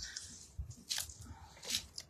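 Faint close-up handling noise, with two short rustling sounds about a second in and near the end.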